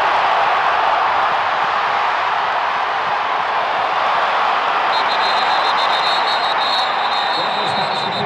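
Large football-stadium crowd cheering in a steady, dense roar. About five seconds in, a high-pitched tone broken into short pulses joins it.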